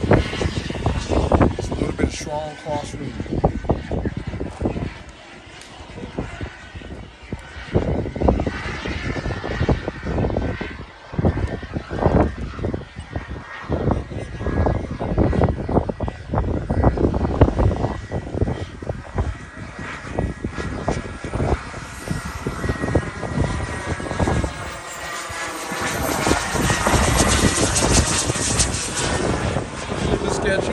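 Turbine engine of a BDX Aero Sport model jet whining as it flies. It grows louder in the last few seconds as the jet comes in to land, with a high whine falling in pitch.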